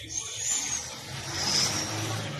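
Handling noise from a phone being moved with its microphone rubbing against fabric: a rough scraping rustle that swells twice over a steady low hum.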